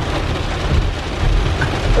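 Heavy rain falling on a car's roof and windshield, heard from inside the cabin, with a steady low rumble underneath.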